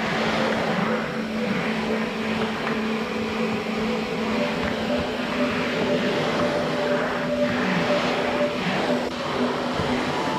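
Canister vacuum cleaner running steadily while its floor nozzle is pushed back and forth over a wooden floor.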